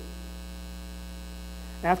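A steady low electrical mains hum, holding level with no other sound, until a man's voice starts again near the end.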